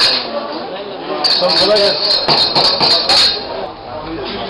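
Rapid, light metallic clinking and jingling from about a second in until past three seconds, over the murmur of voices.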